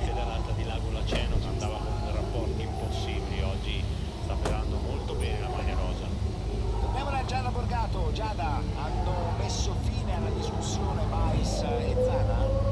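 Steady low rumble of idling vehicle engines, with indistinct voices in the background.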